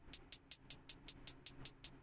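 A programmed trap hi-hat playing solo in a plain, even two-step pattern: short high ticks at a steady rate of about five a second.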